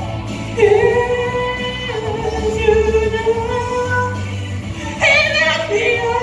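A girl singing into a microphone over a pop backing track, holding long notes: one from about half a second in until about four seconds, and another beginning about five seconds in.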